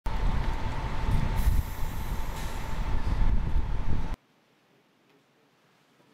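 Loud outdoor city traffic noise: a rumbling wash of road noise with a steady high whine through it, cut off abruptly about four seconds in.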